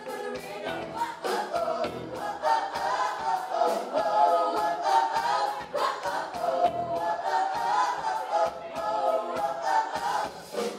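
Group of female vocalists singing together into microphones over a live backing band with a steady beat.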